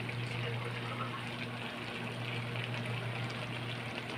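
Vegetables in coconut-milk sauce simmering in a metal pan, a steady bubbling hiss, over a steady low hum.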